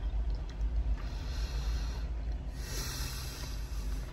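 A man chewing a mouthful of brisket and breathing out through his nose, with two long soft exhales, one about a second in and one near three seconds. A steady low rumble runs underneath.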